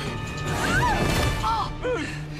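Movie soundtrack with loud crashing and smashing noise over dramatic music.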